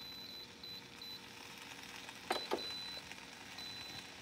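Short electronic beeps from an electric grill's digital control panel as its dial is turned to set the temperature. A quick run of beeps comes near the start and another in the second half, with a brief click just before it.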